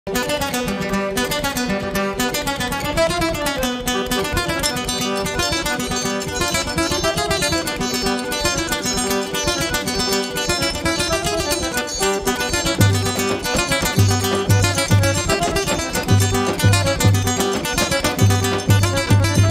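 Forró band playing an instrumental passage: seven-string acoustic guitar and eight-bass button accordion over a steady triangle. Deep zabumba bass-drum beats come in about 13 seconds in.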